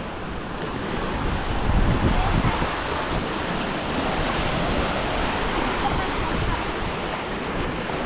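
Sea surf breaking and washing onto a beach, with wind buffeting the microphone and rumbling most around two seconds in.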